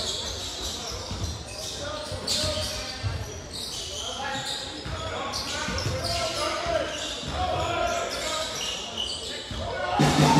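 Basketball being dribbled on a hardwood court in a large, echoing sports hall, a run of short bounces, with voices from players and spectators underneath.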